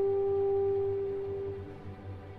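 Slow brass melody: a single long held note that fades away near the end.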